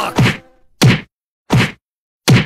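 Cartoon whack sound effects of blows landing on a body: three short, heavy hits with a deep thud, spaced about two-thirds of a second apart.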